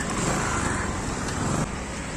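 Steady road traffic noise from passing vehicles.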